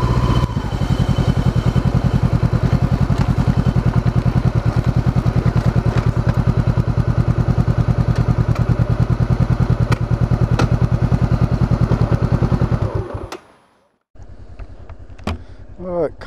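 2013 Honda CB500X's 471 cc parallel-twin engine, fitted with a Staintune exhaust, idling with a steady, evenly pulsing beat. The beat dies away about 13 seconds in.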